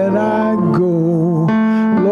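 A worship song sung with instrumental accompaniment, the voice holding long notes with vibrato.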